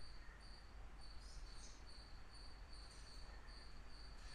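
Near silence: room tone with a faint, high-pitched chirping that pulses about three times a second.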